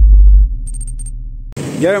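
Logo intro sound effect: a deep bass boom that dies away over the first half-second, with faint light clicks after it, then cuts off. A man starts speaking near the end.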